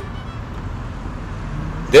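Street traffic in a town centre: a steady low rumble of passing cars, with no distinct single vehicle standing out.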